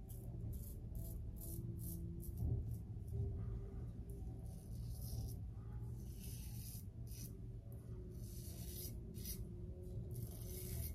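Double-edge safety razor scraping through lathered stubble on the cheek and neck in a series of short strokes, some in quick runs with pauses between.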